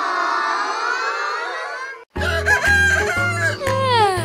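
A held wash of many overlapping tones for about two seconds, then a sudden cut to the opening of a children's song: music with a pulsing bass beat and a rooster crowing over it, the crow ending in a long falling note.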